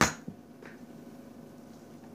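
One sharp knock at the very start as a small plastic Play-Doh tub is struck against a children's play table, a faint tap soon after, then quiet room tone.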